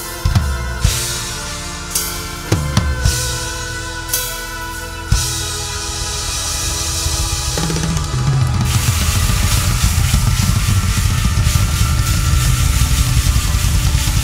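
A heavy metal band playing live, led by a Tama Starclassic drum kit with Sabian and Meinl cymbals: for the first several seconds the drums hit separate accents, kick, snare and crash together, with the cymbals and held guitar chords ringing out between them. About eight and a half seconds in, the whole band kicks into a dense, driving section with continuous drumming.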